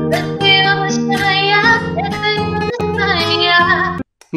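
A young woman singing a song over fingerpicked acoustic guitar accompaniment. The singing and guitar stop together right at the end.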